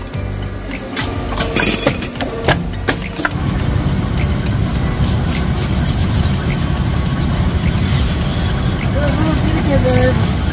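Copper-tube processing machinery in a factory: a few sharp metal clacks in the first three seconds, then a steady, loud machine drone from about three seconds in.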